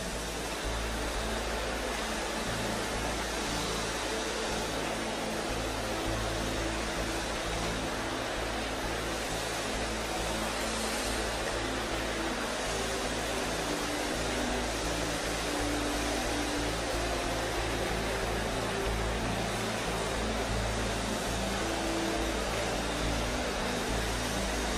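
A congregation praying aloud all at once, a steady dense murmur of many voices, over soft held keyboard chords.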